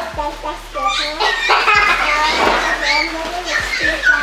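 High-pitched voices chattering, altered by helium breathed from foil balloons.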